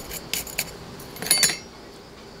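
Light metal clicks, then a short cluster of clinks with a brief high ring about one and a half seconds in, from a metal planting tool handled while repotting succulents.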